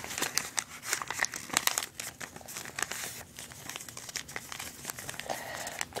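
Origami paper rustling and crinkling as it is handled and folded, with irregular crisp crackles throughout.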